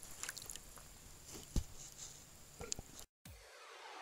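Shallow river water lapping faintly, with a few soft wet knocks and squishes of handling. It cuts off abruptly about three seconds in.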